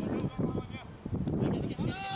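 Voices shouting during a football match: short calls, then a longer drawn-out call that rises and falls near the end.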